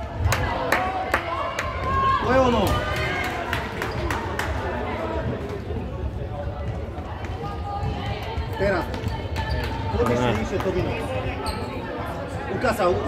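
Children and spectators calling out in a large indoor sports hall during a futsal game, over a steady background rumble. In the first couple of seconds the ball is heard being kicked and bouncing on the wooden court in a run of short thuds.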